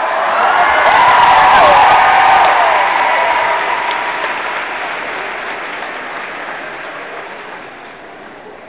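Concert audience applauding with some cheers. It swells over the first two seconds and then slowly dies away.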